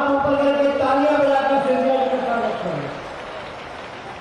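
A man's voice through a public-address system holding a long chanted call on a steady pitch, then falling in pitch and fading out near the end.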